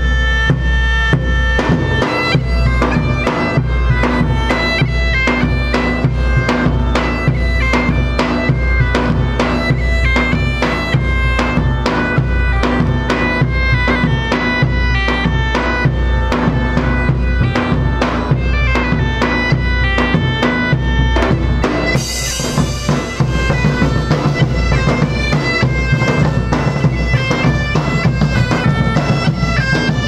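German bagpipes playing a lively tune in ensemble over a steady drone, with big drums beating time throughout. About two-thirds of the way through, a brighter hissing layer joins the beat.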